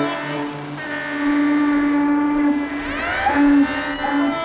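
Several ships' whistles and horns sounding together at different pitches in a held, overlapping chord. About three seconds in, another whistle starts up with a rising pitch.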